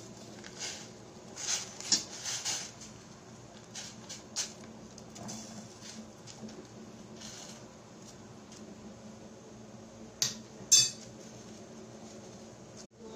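Metal spoon scraping and clinking against a stainless steel pot as bait packs are turned over in the water, in scattered strokes through the first few seconds. Two sharp clinks near the end are the loudest, over a faint steady low hum.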